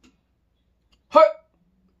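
A man's single short, loud hiccup, a sharp 'hic', about a second in.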